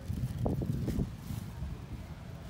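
Low, uneven wind rumble on a phone microphone, with a few footsteps on pavement.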